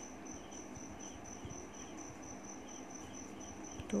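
A cricket chirping steadily in the background: an even, high-pitched pulse repeating a few times a second. Faint scratching of a pen writing on paper lies underneath.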